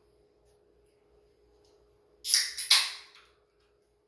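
An aluminium beer can being cracked open about two seconds in: a sharp snap of the tab and a short hiss of escaping gas, with two peaks about half a second apart.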